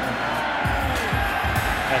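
Background music with a low, steady beat.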